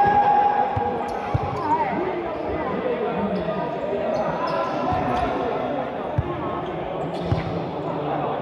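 Futsal ball thumping on the hard court of an indoor sports hall as it is kicked and bounced, about five separate thuds, over shouting voices that echo in the hall.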